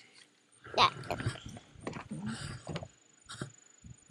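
Soft rustling and a few light clicks of a hand-held camera being moved about, after a short spoken "yeah".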